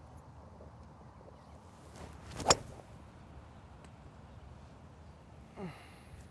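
A golf hybrid is swung with a short whoosh and strikes a golf ball once with a sharp crack about two and a half seconds in. The shot is struck about as solidly as the golfer could hit it.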